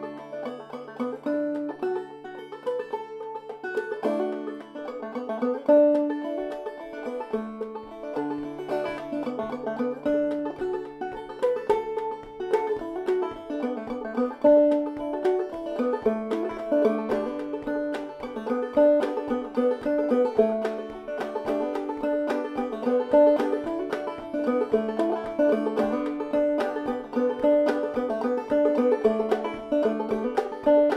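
Solo open-back clawhammer banjo, a Kevin Enoch Dobson model with a brass spun rim tuned aDADE, playing an old-time tune in a steady, driving rhythm of brushed and plucked notes.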